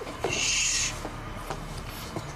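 Muffled, hissing breath of a man being smothered, forced through a hand clamped over his mouth and nose. It comes as one loud hiss from about a quarter second in until nearly a second, over a low steady hum.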